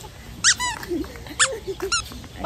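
Short, high-pitched squeaky animal calls, about four in two seconds, each a quick rise and fall in pitch.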